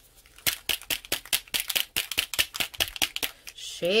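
A small bottle of pearl alcohol ink being shaken, the mixing ball inside rattling as a quick run of clicks, about six a second, that stops shortly before the end.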